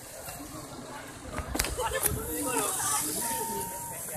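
Background chatter of people talking outdoors, fainter at first and picking up about halfway through, with two sharp clicks about one and a half and two seconds in.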